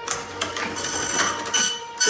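Printer sound effect in a film trailer soundtrack: a machine steadily feeding out printed paper, a mechanical whir with faint high steady tones.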